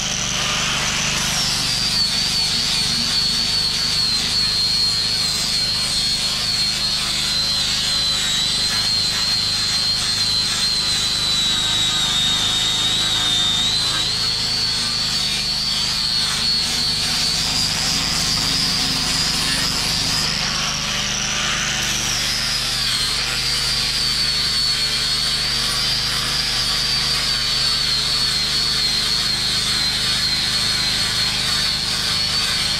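Angle grinder with a 36-grit sanding flap disc running without a break, grinding the weathered surface off an oak board for heavy stock removal. A high motor whine wavers in pitch over the rasp of the abrasive, sinking slightly near the middle and rising again about two-thirds of the way through.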